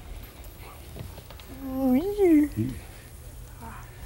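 A boy's single drawn-out wordless exclamation, its pitch rising then falling, about two seconds in, over a low steady hum. A faint click comes about a second in.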